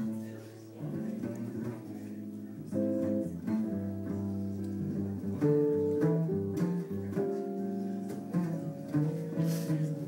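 Live jazz trio playing an instrumental passage of a slow ballad: plucked guitar notes and chords over a double bass line, with no singing.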